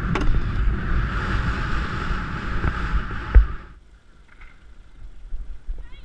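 Wind rushing over a rider-worn camera's microphone at the gallop, with irregular low thuds from the pony's hoofbeats and the jolting of the camera. A sharp knock comes just before the rushing cuts off suddenly at about four seconds in, leaving much quieter field sound.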